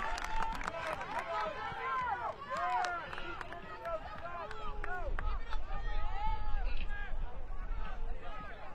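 Several voices overlapping at field level: players and spectators calling out and chatting, with no one voice carrying on for long.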